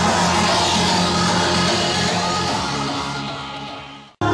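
Loud hardstyle dance music playing through a club sound system during a live DJ set, fading out over the last second and a half.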